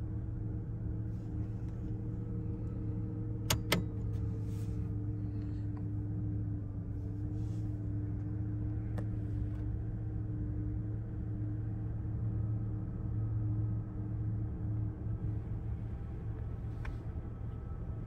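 2001 Mazda B3000's 3.0-litre V6 idling steadily, a low drone heard from inside the cab. Two sharp clicks come about three and a half seconds in, and a fainter single click later.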